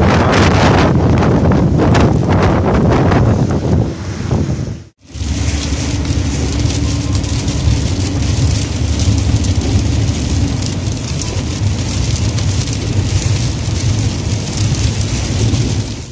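Strong wind buffeting a phone's microphone in uneven gusts. About five seconds in it cuts to steady road noise inside a car on a wet road: tyre hiss and spray over a low hum.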